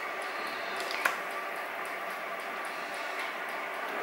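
Thick, runny chocolate cake batter pouring from a plastic bowl into a paper-lined cake tin: a soft, steady squishing, with one faint click about a second in.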